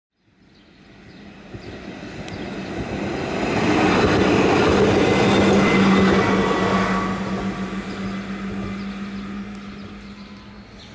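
Tatra KT4D tram passing by on its track, growing louder as it approaches, loudest about four to six seconds in, then fading as it moves away. A steady low hum runs under the rolling noise.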